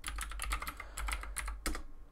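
Computer keyboard being typed on: a quick run of about a dozen keystrokes entering a password, ending near the end.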